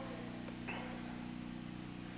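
A steady low hum made of several even tones, with one faint click a little under a second in.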